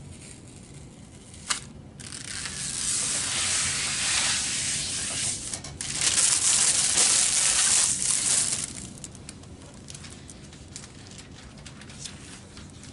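Sheet of iron-on plastic covering film crackling and crinkling as its backing sheet is peeled off. A single click comes about a second and a half in, the crackling starts about two seconds in, is loudest just past the middle and stops well before the end.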